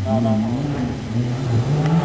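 Rally car engine revving, its pitch rising and falling through gear changes and climbing near the end.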